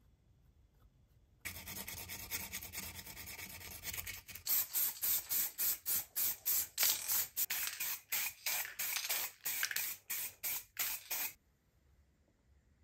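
Aerosol spray-paint can hissing: a steady spray of about three seconds starting a second and a half in, then a quick run of short bursts, about three a second, that stops suddenly near the end.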